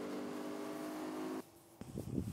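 Motorboat engine droning steadily at speed over the rush of water from the wake; it cuts off suddenly a little past halfway, followed by a short click.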